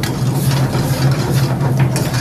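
Steady low drone of a commercial kitchen's exhaust hood fan, with a few light clinks of a metal ladle stirring curry in the pan.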